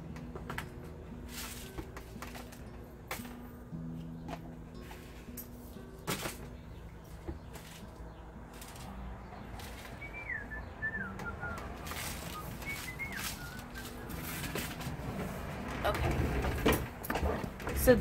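Faint background sound in an empty work area: low held tones that change pitch every second or two, and a few scattered clicks. A bird chirps several times, short falling notes, around ten to thirteen seconds in. Rustling and handling noise grows near the end.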